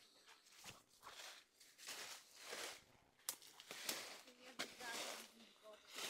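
Faint footsteps through dry leaf litter and undergrowth, leaves and twigs rustling with each step, about one step a second.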